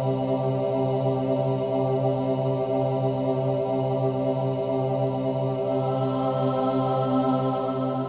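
Intro music: one steady, chant-like drone held on a single low pitch with a rich stack of overtones. Its upper overtones brighten slightly near the end.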